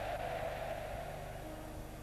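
A steady hiss-like noise that fades over the second half, with faint held musical notes coming in near the end.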